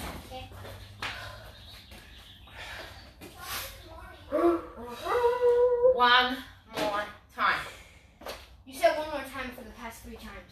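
Indistinct voices of a woman and a child, one voice drawn out for about a second midway, with scattered light footsteps and knocks.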